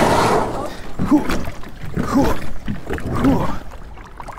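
A man laughing in short bursts about once a second, after a brief rush of noise at the start.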